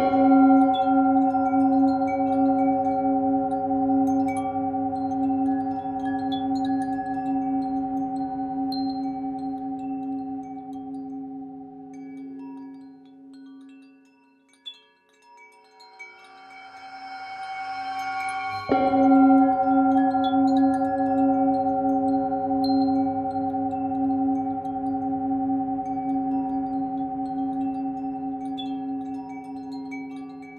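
Tibetan singing bowl struck twice, the strokes about eighteen seconds apart. Each rings on in several steady tones and slowly dies away, the first nearly fading out before a swelling sound leads into the second. Wind chimes tinkle faintly throughout.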